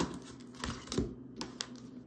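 Oracle cards being handled on a wooden tabletop: a few soft clicks and rustles of card stock as cards are drawn from the deck.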